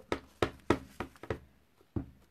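A quick run of light taps and knocks, about six in a second and a half and one more near the end, from rubber-stamping supplies being handled on a craft table.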